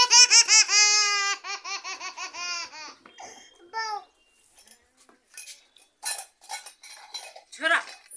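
High-pitched laughter, a rapid run of 'ha-ha' syllables lasting about three seconds that trails off. After it come scattered clicks and rustles, with one short falling voice sound near the end.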